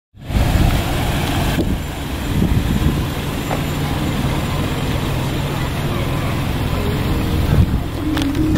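Steady low rumble of a motor vehicle running, with outdoor traffic noise and a low, even hum through the second half.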